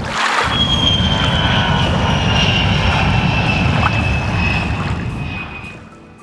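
Airplane passing sound effect: a steady engine rumble with a high whine that slowly falls in pitch, fading out over the last second or so.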